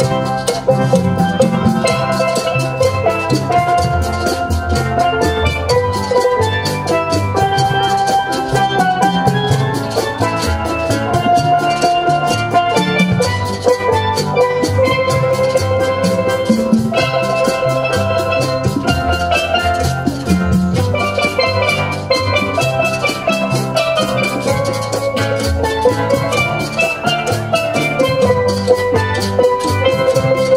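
Steel drum band playing live: steel pans carry ringing melodic lines over a steady beat from congas and a drum kit.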